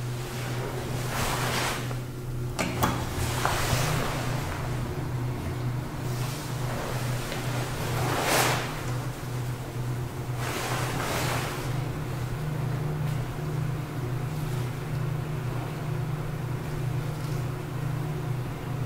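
1973 Kone Asea Graham traction elevator, modernised, travelling in its shaft: a steady low hum from the machinery, with rushing swells of noise a second or so in, at about three and a half seconds, about eight seconds in, and again around eleven seconds.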